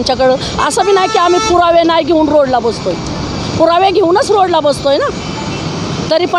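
A woman speaking loudly and emotionally in Marathi close to a handheld microphone, with a short pause about halfway, and steady street traffic noise behind her.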